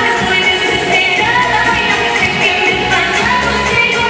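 Loud music with a singer's voice over a steady beat, filling a dance hall.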